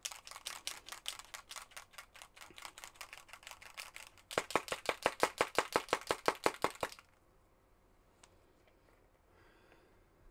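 Rapid, evenly spaced sharp clicking, about six to seven clicks a second, louder in its second half, stopping abruptly about seven seconds in.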